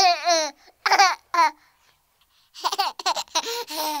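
A baby laughing and babbling in short high-pitched bursts, with a pause about halfway through, then a quick run of giggles near the end.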